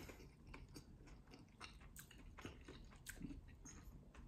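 Near silence, with faint soft clicks of someone chewing food quietly with the mouth closed.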